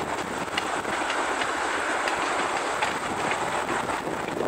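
Passenger train of private railroad cars rolling past, a steady sound of wheels on rail with light clicks about twice a second from the wheels crossing rail joints.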